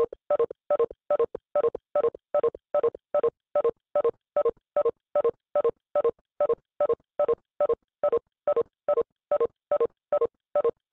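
Electronic beeping: short beeps of a few steady tones at once, repeating evenly about two and a half times a second.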